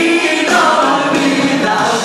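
Several male voices singing a melody together, backed by a live band with electric guitar and drums.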